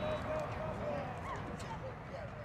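Indistinct talking from a group of people close together, several voices overlapping, fading out toward the end.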